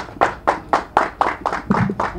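Hand clapping from a small audience, a quick steady run of distinct claps at about five a second, as applause at the end of the event.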